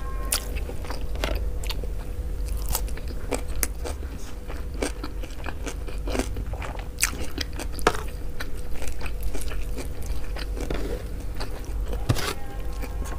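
Close-miked eating sounds: irregular wet mouth clicks and chewing as mansaf rice with yogurt sauce is eaten by hand, mixed with the fingers squeezing rice and gathering it off a plastic tray. A faint steady hum lies underneath.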